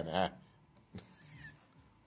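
A man's voice drawing out the last word and trailing off, followed by quiet studio room tone with a faint low hum and a single click about a second in.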